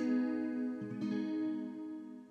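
Guitar chord ringing out and fading, with another chord plucked about a second in and left to die away, closing a slow ballad passage.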